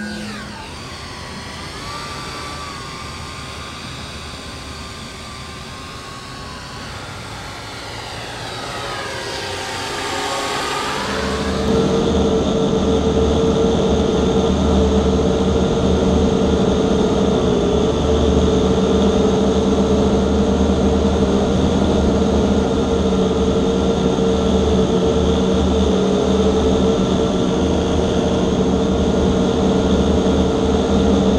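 A machine-like electronic drone. Sweeping, phasing tones swell for about eleven seconds, then settle into a loud, steady hum with several held pitches over a low rumble.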